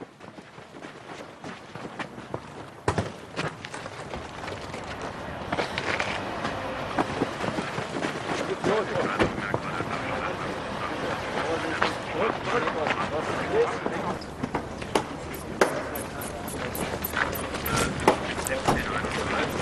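Indistinct overlapping voices and commotion that start very quiet and grow steadily louder, with scattered sharp clicks that come thicker near the end.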